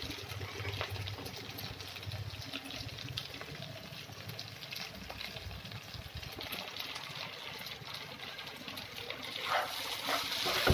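Potato sabzi cooking gently in a non-stick kadai: a low, steady sizzle with faint scattered crackles. Near the end a spatula starts to stir the pan.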